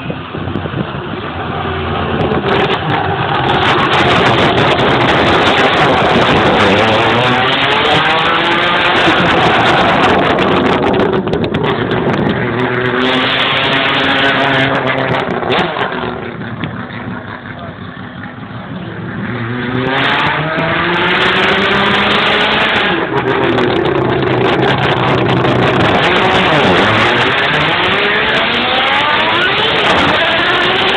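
Mazda 3 with a 20B three-rotor rotary engine accelerating hard, its pitch climbing in repeated sweeps and dropping at each gear change. It is loud throughout, with a short lull around the middle.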